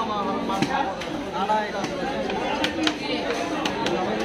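A heavy knife chopping through a queen fish head on a wooden chopping block: several sharp knocks, irregularly spaced and mostly in the second half. Steady chatter of voices runs underneath.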